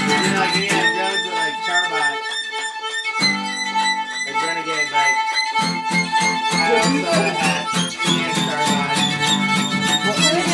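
Fiddle playing a bowed melody over acoustic guitar strumming. The guitar drops out briefly in the first half, leaving the fiddle mostly alone, then comes back in.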